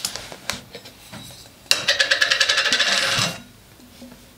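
Glass whisky bottle being pulled out of a cardboard presentation tube: a rapid, juddering scrape lasting about a second and a half, with a faint click before it.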